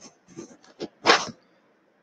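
A person's short, sharp breath about a second in, after a few faint mouth clicks.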